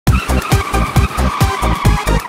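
A cartoon car sound effect of tyres screeching: a held high squeal that sinks slightly and fades near the end. It plays over an electronic dance beat with a steady kick drum at about two beats a second.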